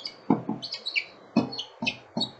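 Small birds chirping in short high calls, some gliding down in pitch, with a few soft knocks.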